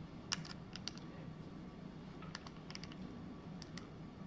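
Faint, scattered light clicks and ticks from hands working the adjustment parts of a Magpul PRS Gen 3 rifle stock while they are set finger tight, coming in small clusters rather than a steady rhythm.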